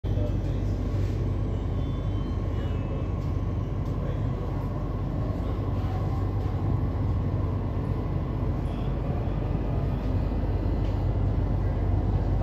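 Steady low rumble inside a Delhi Metro train carriage as the train runs.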